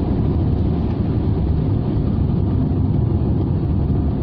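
Rover 45's 2.5-litre KV6 V6 engine and road noise heard from inside the cabin at speed: a steady low drone. The car has just had fresh oil and a new air filter.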